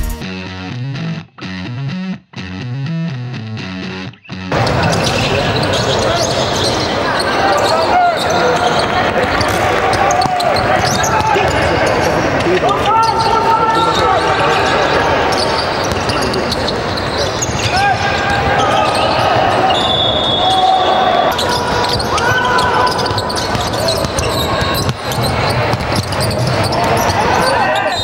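Live sound of an indoor basketball game: the ball bouncing on the court amid shouting voices, echoing in a large hall. Music plays for the first four seconds or so before the game sound comes in.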